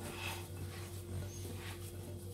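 A hand in a clear plastic glove kneading and mixing a moist mashed chickpea and spice mixture in a glass bowl: soft, irregular squishing and rustling. A steady low hum runs underneath.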